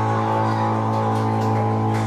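Amplified electric guitar holding one low chord that rings on steadily, with a few light cymbal strokes from the drum kit over it.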